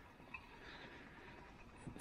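Near silence: faint station platform ambience with a single small click about a third of a second in.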